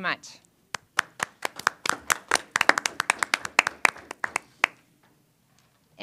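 A small group of people clapping hands in scattered, uneven claps. The clapping starts about a second in and dies away near the end, lasting about four seconds.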